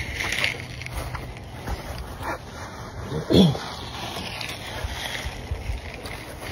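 A man coughing, two short coughs a little past halfway, over steady background noise.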